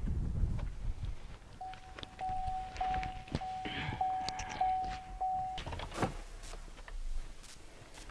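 A Buick LaCrosse's warning chime dings about seven times in an even run, roughly one and a half dings a second, with its driver's door open. It stops near the end, followed by a single thud.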